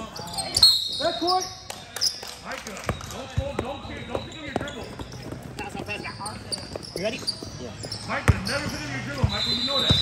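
A basketball bouncing on an indoor gym court in sharp, irregular strikes, mixed with indistinct voices of players and spectators, echoing in the large hall. A brief high squeak or whistle is heard near the start and again near the end.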